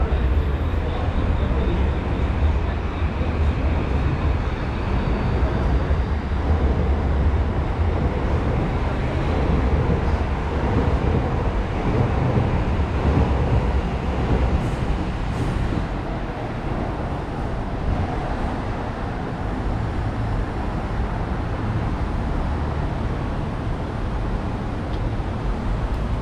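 Train running on the elevated railway overhead: a heavy low rumble, strongest over the first ten seconds or so, then dying down, over steady city street noise.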